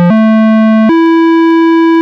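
WS-101 software synthesizer, an emulation of the Roland SH-101, playing a single-note square-wave line: the pitch steps up twice without a break, with a faint click at each step, then holds on the higher note.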